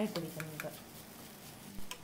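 Wooden spatula stirring a dry chicken and mashed-potato filling in a nonstick pan, with a few light taps. A sharper knock comes near the end.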